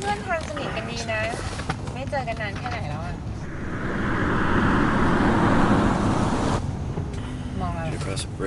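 A car's rushing road noise swells over about three seconds as it approaches, then cuts off abruptly. Voices talk just before it.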